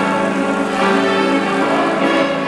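A children's string orchestra, mostly violins, playing a piece in held bowed notes.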